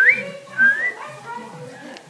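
A person whistling two short rising notes about half a second apart, the first the loudest: a whistled signal call meaning that all is okay.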